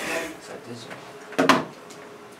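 A voice trails off, then about one and a half seconds in comes a single sharp knock with a short ring after it.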